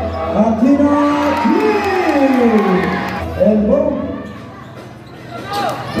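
A basketball commentator's long, drawn-out calls that glide down in pitch, over music and crowd noise, with a basketball bouncing on the court near the end.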